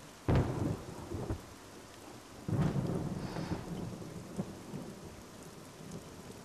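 Thunder rumbling twice over steady rain: a sudden crack-and-rumble just after the start that dies away within a second or so, then a longer rumble starting about two and a half seconds in.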